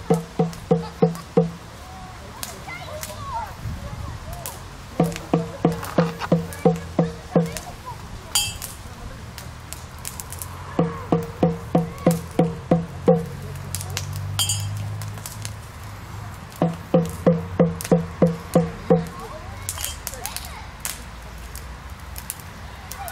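Large frame drum struck by hand in short runs of about ten even beats, roughly four a second, each beat with a low ringing pitch. One run ends about a second in, and three more follow with pauses of a few seconds between them.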